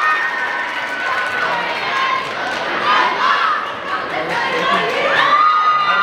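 A crowd of high school students cheering and shouting, many high-pitched screams and calls overlapping, with one long high shout held about five seconds in.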